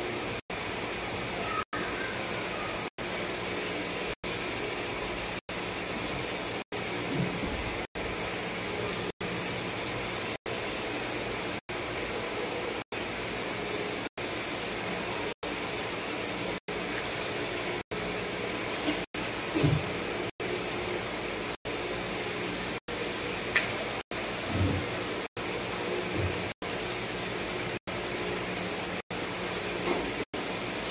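A steady background hum and hiss, cut by brief dropouts about every second. A few faint taps and clicks come in the second half from hands handling a rubber-band bracelet and its small plastic beads.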